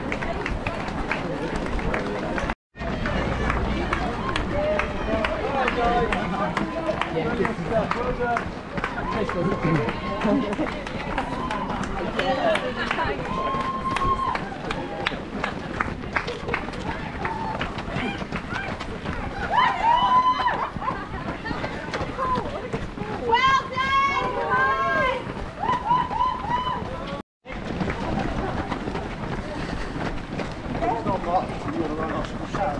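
Many runners' footsteps slapping on a tarmac road, with voices of runners and spectators talking and calling out; a few high shouts come in the second half. The sound briefly cuts out twice, about three seconds in and near the end.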